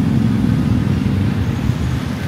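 Road traffic on a city avenue: a steady low rumble of car, bus and motorcycle engines running.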